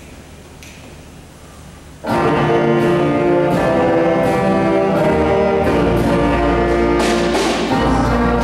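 Quiet room hush, then about two seconds in a student jazz band comes in together with horns and saxophones playing held chords; bass and drums join about halfway through.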